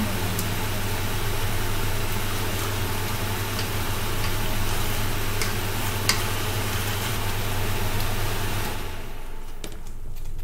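Steady electric motor hum with an even hiss, like a kitchen fan running, that cuts off about nine seconds in. One sharp clack of a utensil on cookware about six seconds in.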